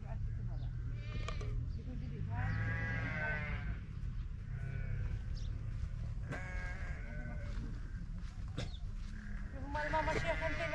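Bleating of sheep or goat-type livestock in pens: several drawn-out, wavering calls, the longest lasting over a second near the middle, over a steady low rumble of wind on the microphone.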